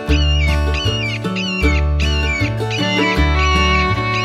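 Background music: an upbeat string tune with a plucked and gliding melody over a steady bass line that changes note every second or so.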